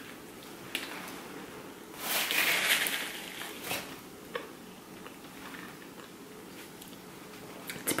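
A person biting into a sub sandwich and chewing it, with a few small mouth clicks and a louder stretch of chewing noise about two to three seconds in, then quieter chewing.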